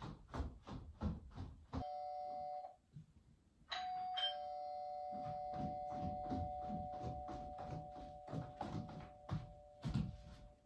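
Doorbell chime ringing twice. About two seconds in comes a brief two-tone chime that cuts off after a second. Then comes a high note followed by a lower one, and both ring on steadily for several seconds.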